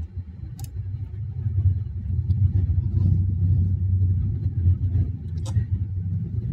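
A steady low rumble that swells about a second in and holds, with two short clicks, one near the start and one near the end.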